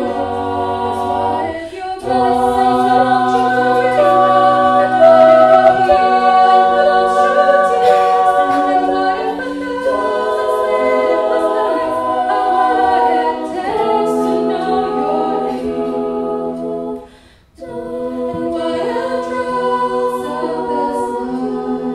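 A cappella vocal ensemble of mixed voices singing, a female lead voice over sustained backing harmonies and a low bass part. The sound drops away for a moment about three seconds before the end, then the harmonies resume.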